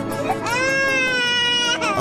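A baby crying: one long wail that rises at the start and is held for about a second, over background music.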